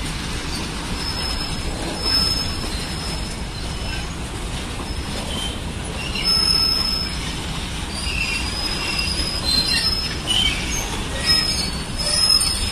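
Freight train's covered goods wagons rolling past: a steady rumble of steel wheels on rail, with a high wheel squeal that comes and goes, strongest about two seconds in, around six seconds in and again near the end.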